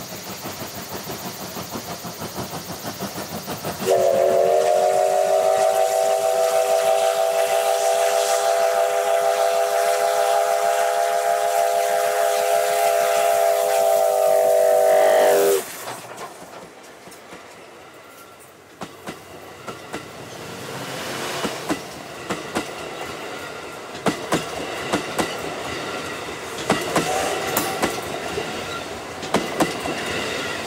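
C57 steam locomotive working with steady rhythmic exhaust chuffs, then a long steam whistle blast of about eleven seconds, a chord of several tones held at one pitch and cut off about a quarter of the way from the end. After it the passenger coaches roll close past with a rumble and sharp wheel clicks over the rail joints.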